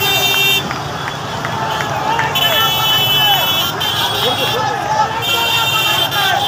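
Horns honking in long blasts over a crowd of shouting voices in a packed street of motorbikes: one blast at the start, a longer one a couple of seconds in, and another near the end.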